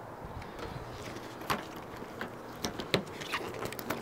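Handling noise from a handheld camera on the move: a quiet steady background hiss with a few scattered soft clicks and taps.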